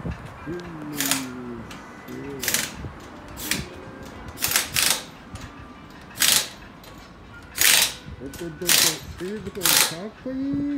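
Pneumatic impact wrench firing in short rattling spurts, about nine of them, at uneven gaps.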